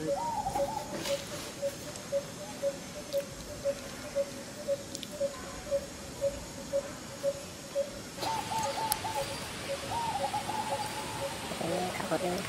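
A bird calling a single short note over and over, about twice a second, steady throughout. Runs of short, higher chirps come in near the start and again from about eight seconds in, over a rise in rustling.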